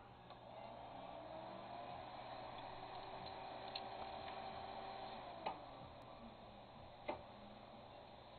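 Hard disk drive powering up: the platter motor spins up with a faint rising whine that levels off after two or three seconds. A sharp click comes about five and a half seconds in, the whine then fades, and another click follows near seven seconds.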